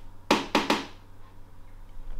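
A quick run of three sharp knocks in the first second, over a low steady hum.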